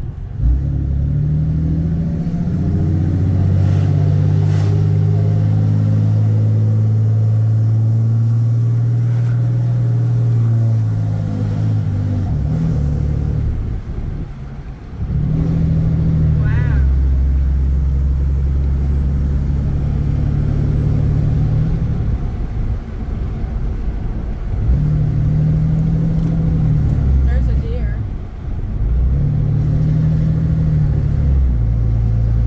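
Inside the cab of a straight-piped Ram pickup, its Cummins inline-six turbo-diesel drones low while the truck drives on. The engine note drops away briefly about halfway through and changes pitch several times after, as the truck shifts through its gears.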